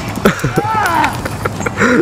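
People laughing, mixed with a run of sharp, irregular clicks and knocks.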